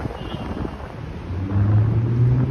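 Wind noise on the microphone, then from about a second and a half in a car's engine accelerating along the street, its low hum growing louder and rising slightly in pitch.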